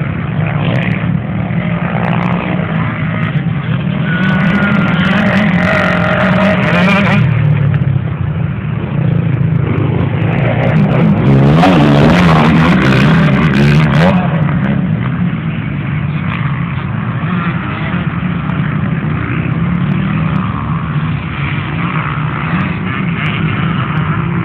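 Off-road enduro racing engines running and revving, rising and falling in pitch. The loudest stretch is about twelve seconds in, as one machine passes close.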